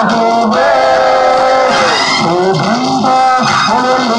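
A man singing solo into a microphone through a PA system, with long held notes and slides in pitch.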